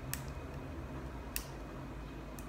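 Orthodontic elastic band and plastic Invisalign aligner being worked into place by fingers at the mouth: two small sharp clicks about a second apart, over a low steady hum.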